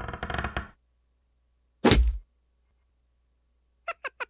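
Cartoon sound effects: a short creak at the start, then a single loud thunk about two seconds in, and near the end a quick run of four or five short squeaky blips.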